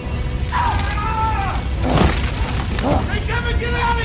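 A man crying out in strain, twice, over a steady low rumble of fire and film score, with a sharp crack about halfway through.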